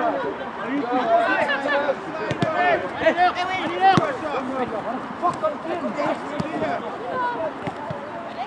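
Overlapping voices of football players and onlookers shouting and talking across the pitch, with a sharp knock of the ball being kicked about four seconds in.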